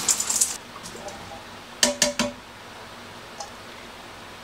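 Corn poured from a plastic bag into a pressure cooker's steel inner pot, a brief rattle in the first half-second, followed about two seconds in by three sharp knocks close together.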